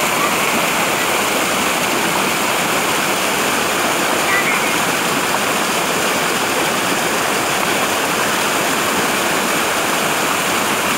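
Small waterfall pouring over rock into a pool: a steady, loud rush of falling water.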